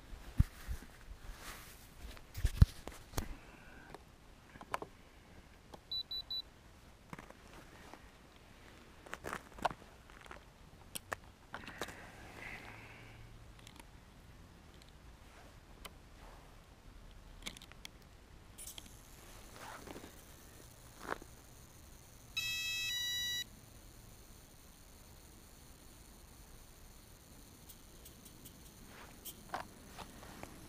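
Scattered knocks and clicks of hands handling a model helicopter, the loudest early on. About three-quarters of the way in, a run of electronic beeps at several pitches lasting about a second: the start-up tones of the E-flite 35-amp speed controller after the flight battery is plugged in.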